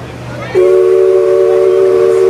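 Loud multi-chime steam whistle sounding one long, steady chord of several notes, starting about half a second in.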